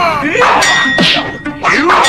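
Fight-scene sound effects: metallic clangs of weapons striking, about three in two seconds, with a high ringing note holding on after the first.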